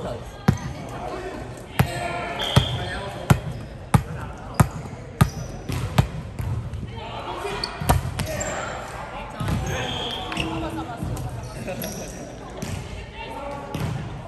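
A volleyball bounced several times on a hardwood gym floor in an even rhythm, then struck hard by hand for a jump serve about eight seconds in. Sneaker squeaks and players' calls ring out in the large, echoing gym.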